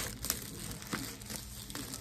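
Clear plastic wrapping crinkling in the hands as a laptop box is pulled out of it: irregular crackles, loudest at the very start.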